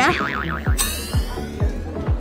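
Warbling electronic beep of a handheld scanner sound effect, followed about a second in by a rising sweep, over background music with a steady beat.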